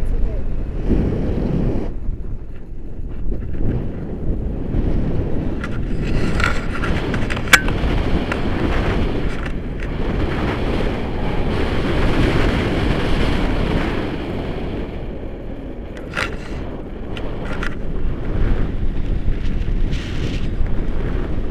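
Wind from the flight of a tandem paraglider buffeting the camera microphone: a low rumble that swells and eases, with a few sharp clicks about midway and near the end.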